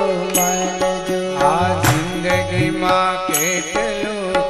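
Indian devotional music: a sung melody over a steady drone and tabla, with the seated audience clapping along.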